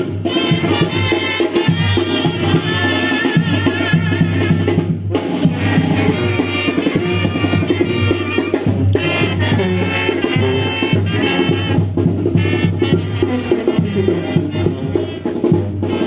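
Latin American band music with brass and drums playing continuously, with a steady bass line and a short break about five seconds in.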